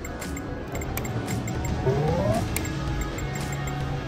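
Electronic sound effects from a Triple Triple Bonus video poker machine as a hand is dealt, with small regular clicks and a short rising tone, over steady casino background music.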